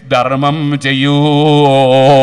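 A man's voice drawing out one long, steady chanted note, the sing-song delivery of an Islamic sermon.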